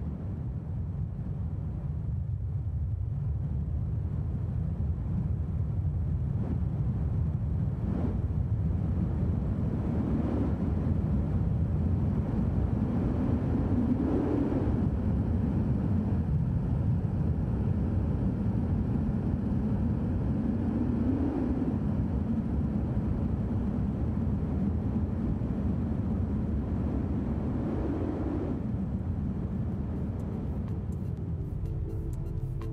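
Proto25 2.5-inch FPV drone in flight: a steady rush of wind over its onboard camera's microphone, with the motors' hum rising and falling in pitch a few times.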